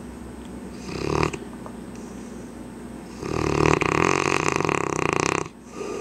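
Mastiff snoring in deep sleep: a short snore about a second in, then a long, loud, fluttering snore from about three seconds in that lasts a little over two seconds.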